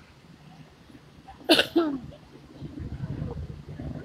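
A person's sudden, loud vocal burst in two quick parts about one and a half seconds in, falling in pitch, followed by a low rumble.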